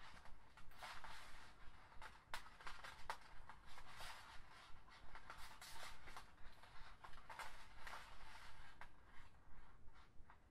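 Flat plastic lanyard strings rustling, scraping and clicking against one another as they are woven and pulled through a stitch by hand. Soft, irregular handling noise with frequent small ticks.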